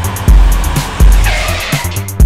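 Electronic music with a steady drum-machine beat, overlaid by a car sound effect of tyres skidding, with the screech strongest in the second half.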